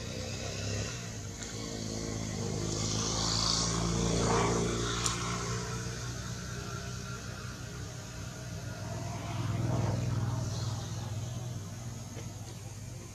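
Small motorcycle engine running, with a steady low drone that swells louder about four seconds in and again near ten seconds.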